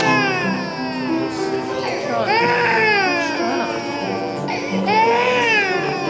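A baby crying in three long wails, each rising then falling in pitch, a little over two seconds apart, over background music with steady held notes.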